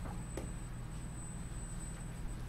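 Quiet room tone: a steady low hum, with one faint click about half a second in.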